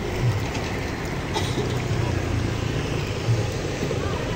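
Chicken pieces deep-frying in a wok of hot oil over a gas burner: a steady sizzle, with voices and street noise behind it.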